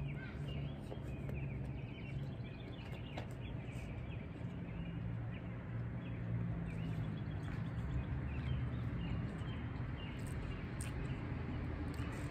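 Birds chirping in short, scattered calls over a steady low hum.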